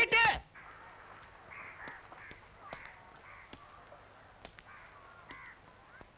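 Crows cawing faintly, a string of short calls repeated every half-second or so, with a few light clicks between them.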